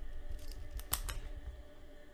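A few short, crisp clicks and rustles close to the microphone, about half a second and one second in, over a low background rumble.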